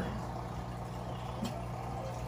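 Aquarium filter and pump running: a steady low hum with a faint wash of moving water and bubbles, and a brief faint click about one and a half seconds in.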